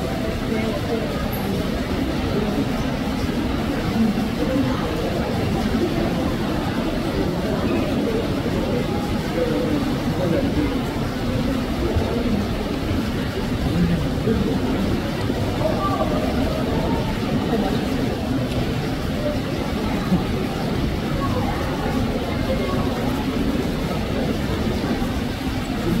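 Crowd of onlookers talking at once, a steady babble of many indistinct voices.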